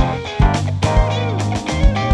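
Live band playing an instrumental passage: electric guitar and bass over a drum kit, with repeated kick drum hits.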